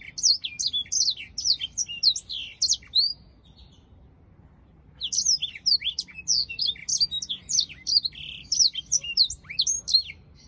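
A caged black-throated canary singing a rapid song of quick, high whistled notes that sweep down in pitch. It sings one phrase that ends about three seconds in, pauses for about two seconds, and then starts a second, longer phrase.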